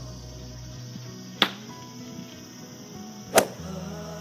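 Two sharp golf-club strikes on a target bird golf ball, about two seconds apart, the second slightly louder, over background music.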